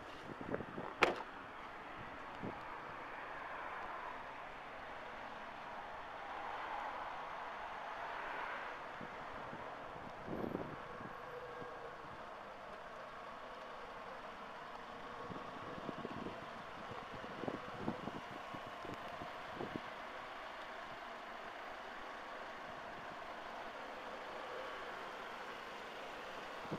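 Steady outdoor background noise with a faint distant hum of traffic, broken by a few brief soft knocks about a second in, around ten seconds in and again near the three-quarter mark.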